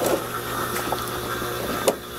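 Steady trickle and hum of a running NFT hydroponic system: water flowing through the channels and its pump running, with a light knock near the end.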